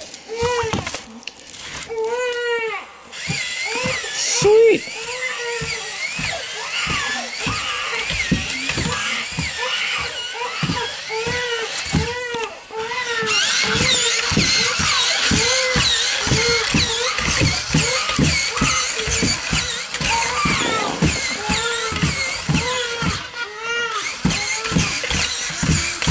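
A battery-powered walking toy robot's gear motor whirring in a repeating rise-and-fall pattern, with its plastic legs clicking and clattering as it walks.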